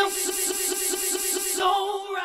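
A sampled sung vowel from a vocal loop, played from a keyboard in a software sampler with a very short section looped, so the word "so" repeats several times a second as one held, stuttering note. A small loop crossfade is set at the loop point to smooth out the click where the loop repeats.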